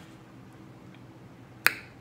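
A single sharp finger snap near the end, over quiet room tone.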